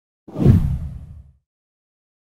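A single whoosh sound effect marking a graphic transition. It comes in suddenly a quarter second in, is heaviest in the low end, and dies away within about a second.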